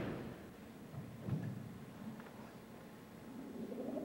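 Quiet auditorium hush, with a thud fading out at the very start and a fainter knock about a second later. Near the end, recorded pop music starts to come in as a swell rising in pitch and loudness.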